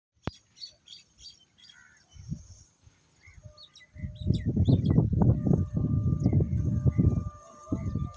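Small birds chirping, with a sharp click near the start. From about four seconds in, loud gusty wind buffeting on the microphone drowns them, with a faint steady tone held underneath.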